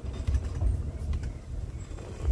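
Low, uneven rumble of a Toyota van's engine and tyres heard from inside the cabin while driving slowly on a rough road, with a few faint knocks and rattles.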